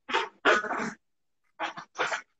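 People laughing in short breathy bursts: two in the first second, then two shorter ones near the end, with dead silence between them.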